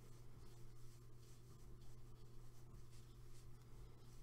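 Faint rubbing and scratching of acrylic yarn being drawn over a crochet hook as stitches are worked, over a steady low hum.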